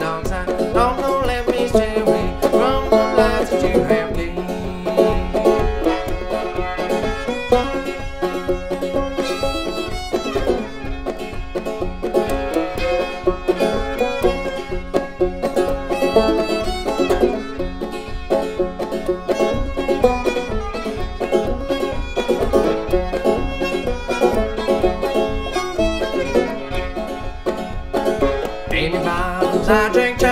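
Instrumental break of an old-time string-band song: banjo and fiddle playing over a steady, even beat, with no singing.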